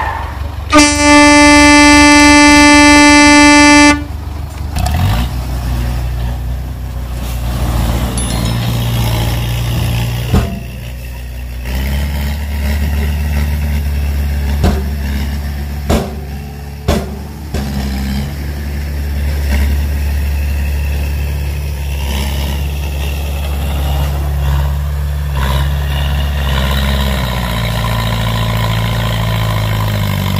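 A loud, steady truck-horn blast about three seconds long near the start. Then a low, steady engine-like drone that shifts pitch several times, with a few sharp knocks in the middle.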